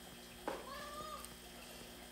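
A pet's faint, short, high-pitched cry of about half a second, a little under a second in.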